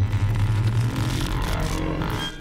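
A loud, low rumbling sound effect with a hiss over it, fading away just after the end.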